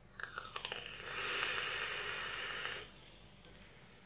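An e-cigarette being vaped. Crackling and a short falling whistle come in the first second as the device is fired and drawn on, then a steady breathy rush of vapour being blown out for nearly two seconds.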